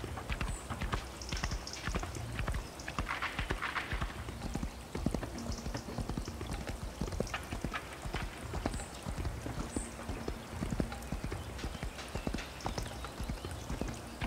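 Hoofbeats of a ridden horse running, a continuous clatter of quick hoof strikes.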